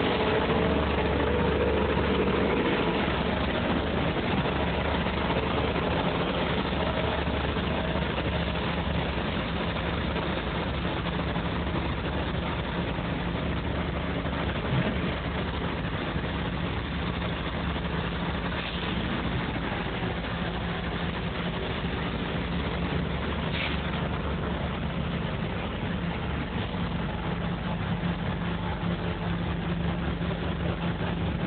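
Heavy engine of construction machinery running steadily, a low continuous hum.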